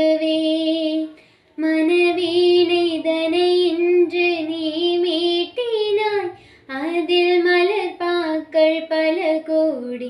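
A young woman singing solo, unaccompanied, in long held and gliding phrases. She breaks briefly for breath about a second in and again past the middle.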